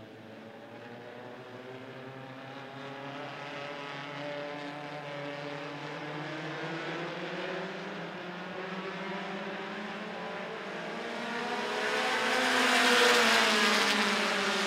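A field of American Short Tracker race cars running as a pack on the restart. The overlapping engine notes rise in pitch and grow steadily louder as they accelerate, loudest as the pack passes about a second before the end.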